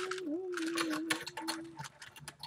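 A voice humming one long, slightly wavering note, over light clicking from a 3x3 Rubik's cube being turned by hand.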